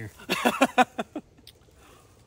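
A man laughing: a quick run of about six short bursts lasting under a second, after which it goes quiet.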